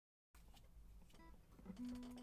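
Near silence of a small room, then near the end a faint, steady low note from the classical guitar as the player's hands settle on the strings.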